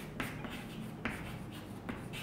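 Chalk writing on a chalkboard: several short, scratchy strokes at an uneven pace as words are written out.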